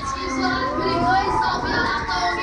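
Excited shouting and whooping voices of riders on a spinning Break Dance fairground ride, with the ride's music still playing underneath.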